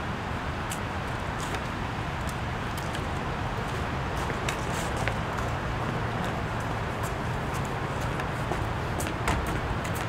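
Outdoor ambience: a steady low rumble and hiss, with scattered footsteps and light taps on a stone landing, the sharpest tap near the end.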